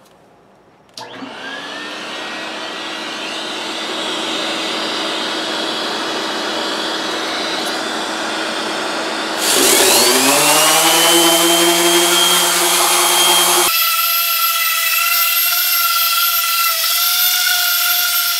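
A vacuum cleaner switched on about a second in, its motor whine rising and then holding steady. Partway through, a random orbital sander with a coarse 50-grit pad spins up and runs on the cast iron skillet alongside it, louder. Near the end the sound changes abruptly to a thinner, higher running tone.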